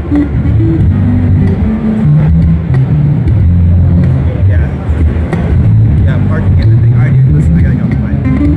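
Two electric basses jamming a groove through amplifiers: deep bass notes moving in steps, with crowd chatter over them.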